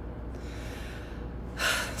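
A woman's quick, audible in-breath about a second and a half in, after a softer breath, as she gets ready to speak; a steady low hum runs underneath.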